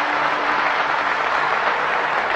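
A large concert audience applauding, a dense steady clapping, as the last held note of the song dies away just at the start.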